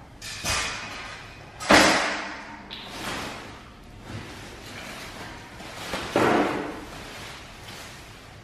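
Black metal dog-crate panels knocking and clattering as they are handled and pulled from their packaging, the loudest knock a little under two seconds in, with rustling of foam packaging sheets between the knocks.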